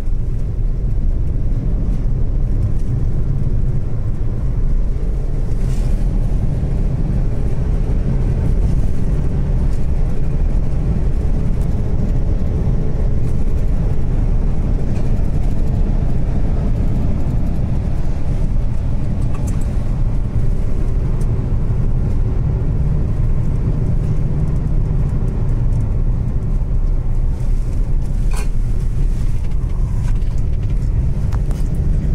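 Car driving along a paved road, heard from inside the cabin: a steady low rumble of engine and tyre noise with a faint engine hum.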